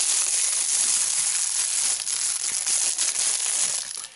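Thin clear plastic bag crinkling steadily as it is handled and opened, stopping just before the end.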